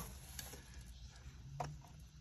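Mostly quiet, with a low rumble and a few faint clicks as a plastic vacuum hose and attachment are handled. The vacuum motor is not running.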